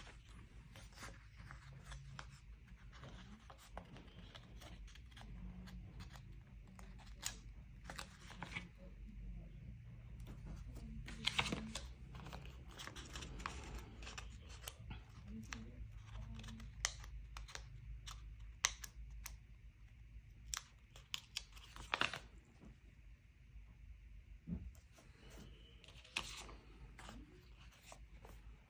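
Sticker sheets being handled and a sticker peeled from its backing: soft paper rustling with scattered sharp clicks and taps, the loudest a little before halfway and again about three quarters of the way through, over a steady low hum.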